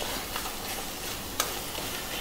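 Onion-tomato masala sizzling in a stainless steel kadhai as a steel spatula stirs and scrapes through it, with one sharp tap of the spatula against the pan about one and a half seconds in.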